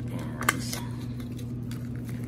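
Vacuum-sealed plastic food pack in a cardboard sleeve handled on a table: light crinkling with one sharp tap about half a second in, over a steady low hum.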